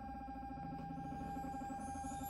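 Car stereo speakers playing the quiet opening of a song streamed from a phone over a Bluetooth audio receiver: held tones and chords.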